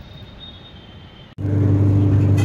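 Quiet background, broken suddenly about a second and a half in by a loud, steady, low machine hum.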